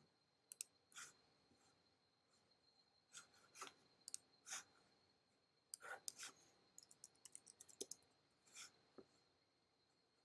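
Faint clicks and taps of a computer mouse and keyboard, scattered through the quiet, with a quick run of keystrokes about seven seconds in. A faint steady high whine sits underneath.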